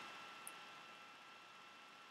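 Near silence: room tone with a faint steady whine, and one faint tick about half a second in.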